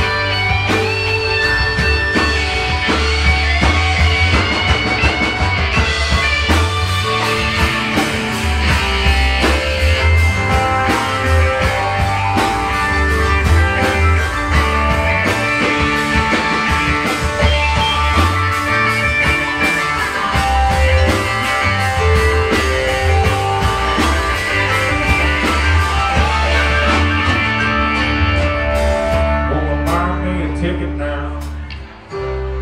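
Live southern rock band playing an instrumental passage: electric lead guitar over bass, keyboard and a steady drum kit beat.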